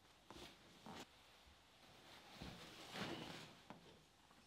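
Faint handling sounds as someone searches for a plug and sits back down in an office chair: a light click about a second in, a soft rustle in the middle and another click near the end.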